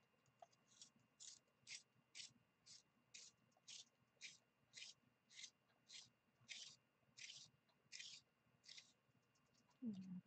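Faint, rhythmic scraping of a green coloured pencil being turned in a two-slot hand-held sharpener, the blade shaving the wood, about two strokes a second; the strokes stop about a second before the end.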